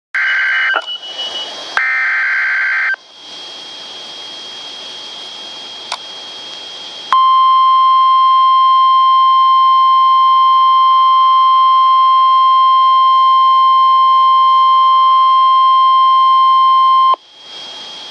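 Weather radio broadcast of an emergency alert: two short buzzy data bursts of the SAME alert header, then a few seconds of radio hiss, then the steady 1050 Hz warning alarm tone for about ten seconds, cutting off suddenly. This is the start of an EAS activation for a severe thunderstorm warning.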